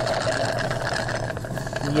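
Steady mechanical hum with a constant, unchanging drone. A man's voice starts just at the end.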